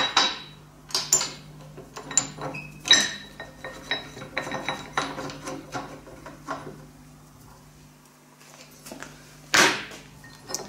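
Steel die block and a T-handle hex key knocking and clinking against the steel body of a bench-mounted bar bender as the die block is fitted and its bolt done up: a run of short sharp metal knocks, a quieter stretch, then a louder bump near the end.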